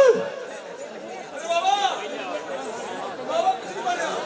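People's voices: a loud drawn-out call right at the start, then scattered shorter calls and chatter from the crowd.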